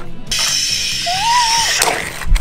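A toy water tanker squirting a spray of water, an even hiss lasting about a second and a half that stops near the end.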